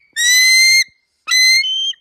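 Bald eagle calling with its real voice: two high, thin whistled notes, each under a second long, the second jumping up in pitch near its end. It is not the powerful scream that films give eagles.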